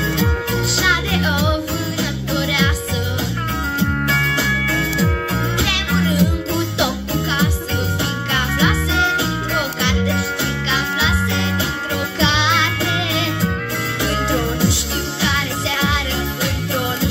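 Pop-song backing track playing through a PA loudspeaker, with a young female voice singing live into a handheld microphone, notes held with vibrato.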